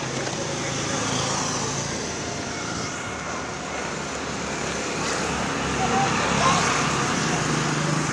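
Street traffic noise: a motor vehicle's engine running close by, with a steady low hum that grows louder in the second half.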